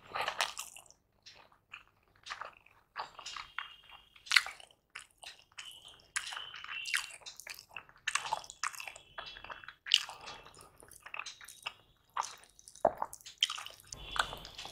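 Close-miked chewing of a mouthful of egg biryani eaten by hand: irregular wet smacks, clicks and soft crunches.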